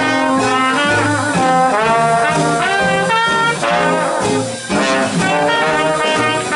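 Traditional jazz band playing an instrumental chorus, with trumpet and trombone leading over string bass, piano and drums.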